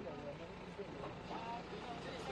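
BMW SUV creeping through a crowd, its engine a steady low hum, with people's voices scattered around it.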